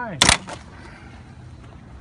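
A single loud, sharp crack as the composite body of a Kamstrup flowIQ 2100 ultrasonic water meter, clamped in a pipe vise, finally gives way under hand force.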